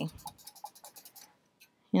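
Small paintbrush scratching on a painting surface in quick light strokes, a rapid run of faint ticks that stops a little over a second in, as a highlight is blended in.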